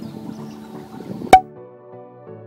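Background music of sustained keyboard-like notes, with one sharp click a little past halfway.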